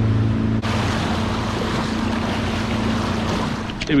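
Motorboat engine running steadily under way, with a loud rush of wind and water noise that takes over about half a second in while the engine's hum continues underneath.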